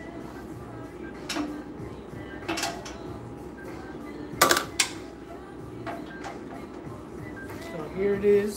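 Scrapes and clacks from working a manual screen-printing press: a squeegee stroking ink across the mesh and the metal screen frame being lifted off the shirt. There are several short strokes, and the loudest pair of clacks comes about four and a half seconds in.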